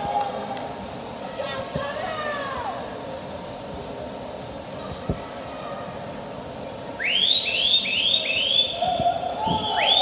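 Steady crowd noise in a large pool hall, then from about seven seconds in a high whistle in a quick run of short rising chirps, two or three a second, followed near the end by one longer rising whistle held high: spectators cheering the swimmers on.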